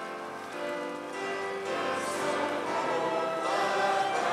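A church congregation singing a hymn with instrumental accompaniment. The sound grows fuller and louder about a second in as the voices come in.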